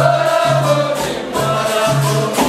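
Capoeira roda music: a group singing in chorus over a steady rhythm of repeated low twanging notes and jingling percussion, typical of berimbau and pandeiro.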